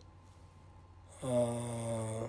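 A man's hesitation sound, a long level "aaah", starting about a second in after a quiet pause.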